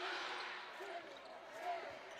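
Arena sound of live basketball play: a steady crowd murmur in a large hall, with the ball and players moving on the hardwood court.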